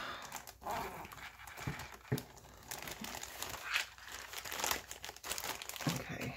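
Clear plastic bag crinkling in irregular crackles as it is handled by hand.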